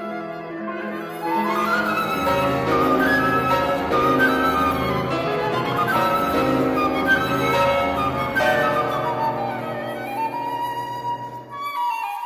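Flute and piano playing a dense classical chamber passage. Deep piano bass notes enter about two seconds in and drop out near the end, leaving a held flute note.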